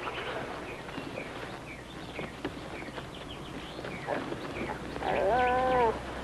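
Birds chirping, then near the end a dog gives one whine lasting about a second.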